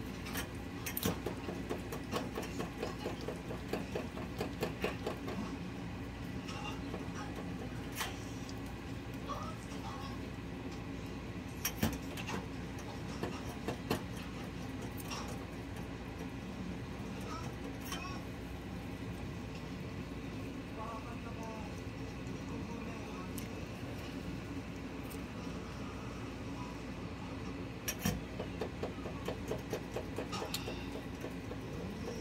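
Wooden chopsticks stirring melting sugar in a small dalgona ladle over a gas flame, clicking and scraping against the ladle, over a steady low hum. The clicks come thick in the first few seconds, then only now and then.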